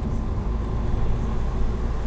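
Steady low rumble of a car driving along, its road and engine noise heard from inside the cabin.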